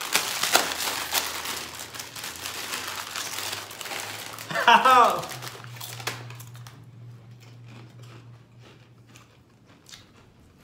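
Chip bags crinkling and rustling loudly as they are tugged and torn open. The crinkling thins out after about four seconds, leaving only faint scattered crackles.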